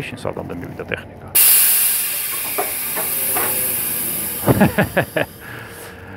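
Compressed air hissing out of a semi-trailer's air system when a valve in the suspension bracket is worked by hand. The hiss starts suddenly and loudly about a second in and fades slowly over about three seconds, followed by a few short clicks.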